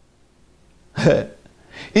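A man's short laugh, a single brief chuckle about a second in after a quiet pause.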